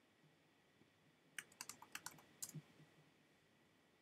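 A quick run of faint computer keyboard keystrokes, about nine clicks within a second near the middle, as a file name is typed into a text field.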